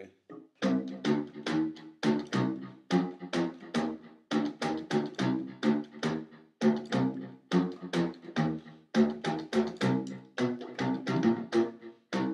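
Bassoon keys clicked and slapped as percussion, picked up and overdriven so that each click comes out louder as a short pitched thud. The strikes come in a steady rhythmic run of about three a second, their pitch shifting as the fingering changes.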